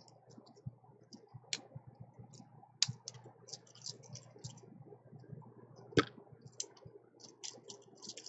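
Clear plastic nail polish swatch sticks clicking against one another and against a metal ring as they are slid around it: scattered light clicks, the sharpest a little before three seconds in and about six seconds in.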